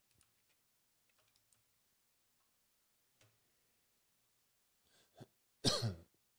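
A person clears their throat once, briefly and loudly, near the end, after a few faint clicks.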